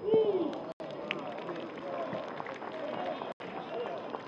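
A man's loud shout at the moment a goal goes in, falling in pitch over about half a second, followed by scattered shouts and voices from players and the few people around the pitch as the goal is celebrated.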